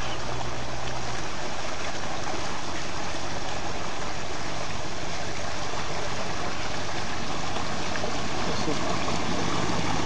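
Steady rush of water around a motorboat, with a low engine drone that fades about a second in and comes back faintly near the end.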